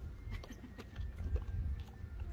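Spotted hyena chewing and crunching into a watermelon, with irregular wet crunches and smacks as it bites the rind and flesh.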